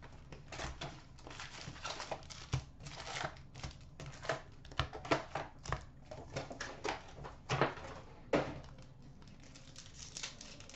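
A cardboard hobby box of foil-wrapped hockey card packs being opened and the packs taken out and handled: irregular crinkling and rustling of the foil wrappers and cardboard, with light clicks and taps.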